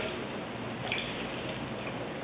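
Steady running noise of an electric potter's wheel with a centered lump of clay, and a faint brief sound about a second in as the potter's hands dip into the water bucket beside it.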